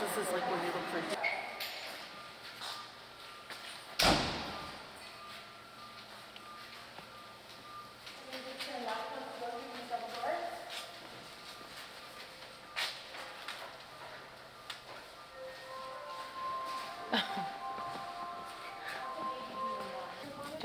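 Patient stretcher being unloaded from an ambulance and wheeled along: one loud thump about four seconds in, faint voices in the middle, and a steady electronic tone over the last few seconds.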